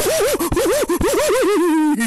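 A pitched sound scratched rapidly back and forth, like a DJ record scratch, its pitch swooping up and down about four or five times a second, then settling into a held, slowly falling tone near the end.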